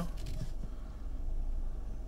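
Low, steady cabin rumble of a 2017 Mercedes-Benz E300 rolling slowly at parking speed, heard from inside the car.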